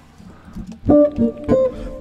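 D'Angelico Premier SS semi-hollowbody electric guitar, strung with heavy flatwound strings, has a few notes picked on it. The notes start about a second in, with another about half a second later, and ring on.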